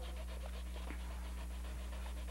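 Faint scratchy strokes of sketching on a stretched canvas, over a steady low electrical hum.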